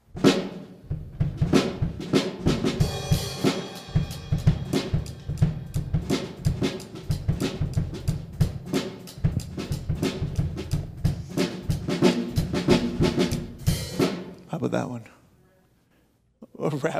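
Drum kit played solo, a steady R&B beat, stopping about a second before the end.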